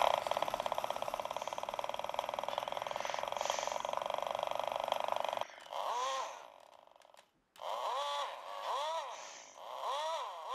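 Battery-powered engine-sound mechanism of a Schuco Elektro Porsche 917 tin toy car, switched on by opening the door: a rapid, even buzzing rattle that cuts off suddenly about five and a half seconds in. After a short silence it gives a string of short rising-and-falling whines.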